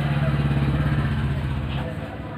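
An engine running steadily with a low, fast-pulsing drone that fades near the end.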